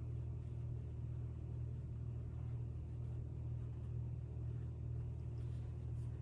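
Steady low background hum, unchanging, with no other distinct sound.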